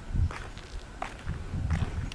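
Footsteps of a person walking on a concrete pavement: a few soft, low steps.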